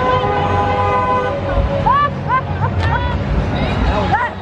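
A horn sounding one held, steady chord that cuts off about a second in, followed by short calls from voices in the crowd.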